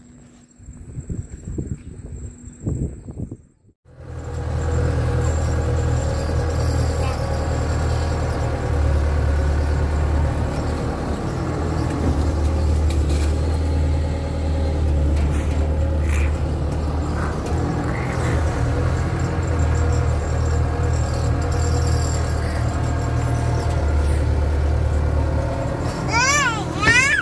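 A diesel engine on the barge carrying a Kato excavator, running steadily with a loud low drone. It starts suddenly about four seconds in, after a few seconds of quiet background with a faint steady high whine.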